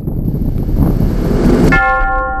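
A rumbling rush of noise swells for about a second and a half and stops abruptly. Near the end a sustained, bell-like tone takes its place and rings on steadily.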